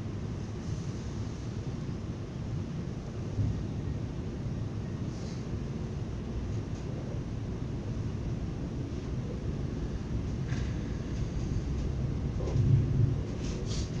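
Low, steady rumble inside the passenger cabin of an ES2G Lastochka electric train pulling out of a station. It grows a little louder toward the end as the train gathers speed.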